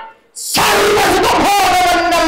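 A performer's loud, drawn-out vocal in Bayalata folk-theatre style, sung or declaimed into a microphone. It breaks off briefly right at the start, then comes back with held notes, one sliding up about a second and a half in.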